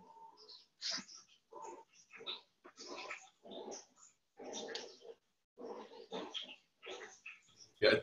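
Faint, short vocal sounds coming and going in bursts about once or twice a second, heard through gated video-call audio.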